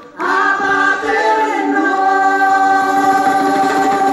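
A group of voices singing together on stage, starting after a short break, gliding through a phrase, then holding a long sustained chord from about two seconds in.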